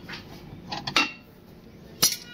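Steel hand tools (a socket wrench on a long extension bar) clinking against the car's front suspension and steering parts: a few irregular metal clicks, the loudest ringing briefly about halfway, and another sharp clink right at the end.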